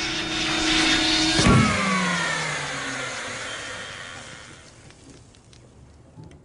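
A canister vacuum cleaner runs with a steady hum, then a sudden clunk about a second and a half in, after which the motor winds down with a falling whine and fades out: the vacuum has choked on something it sucked up and stalls.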